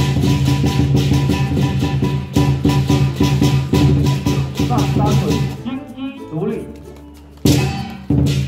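Lion dance percussion of drum, gong and cymbals beating a fast, steady rhythm. It thins out for a moment a little after halfway, and a loud crash near the end starts it again.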